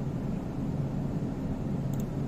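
Steady low hum of a ship's engine and machinery, with a faint click near the end.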